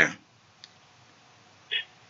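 A man's voice cuts off at the start, then near-quiet with a faint click just over half a second in and a brief, sharper click near the end.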